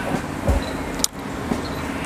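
Steady rumble of nearby road traffic, with a single sharp click about a second in.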